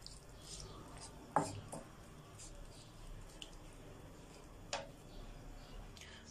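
Quiet stovetop cooking with two light knocks of cookware, about a second and a half in and again near five seconds.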